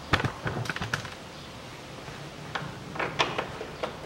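Light clicks and knocks of a gloved hand starting bolts into the radiator fan shroud. A quick run of clicks comes at the start, and another cluster about two and a half seconds in.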